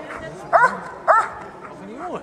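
Bouvier des Flandres barking at a motionless protection helper: the hold-and-bark guarding phase of an IPO protection routine. Two sharp, loud barks a little over half a second apart.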